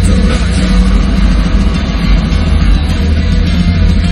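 Live heavy metal band playing loud: a drum kit hit hard with rapid kick-drum and cymbal strokes under distorted guitars.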